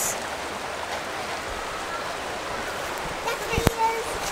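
Shallow stream rushing over rocks, a steady hiss of moving water. A voice comes in briefly near the end.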